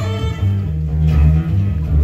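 Acoustic bass guitar playing a plucked bass line almost alone, with the upper instruments of the folk band falling away about half a second in.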